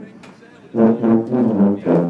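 A section of marching-band sousaphones playing together: after a short lull, a run of short, detached low brass notes starts up less than a second in.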